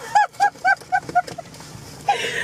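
A person laughing: a quick run of about six high-pitched 'ha' notes, about four a second, fading away within the first second and a half.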